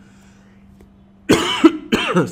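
A man coughing in a short loud burst about a second and a half in.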